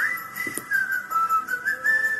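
A high, shrill whistling tone that jumps up in pitch at the start, then wavers and steps down and back up between a few pitches.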